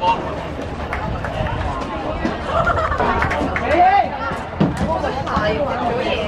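Overlapping voices of football players and onlookers calling and chattering on the pitch, with one drawn-out shout that rises and falls about four seconds in.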